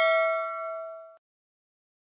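Notification-bell ding sound effect from a subscribe-button animation: one bright chime rings out and fades, then cuts off about a second in.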